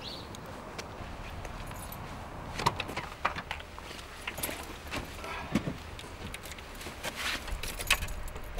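A car's driver's door being opened and someone climbing into the seat, heard as a scatter of light clicks and knocks, then keys jangling near the end as the ignition key is handled.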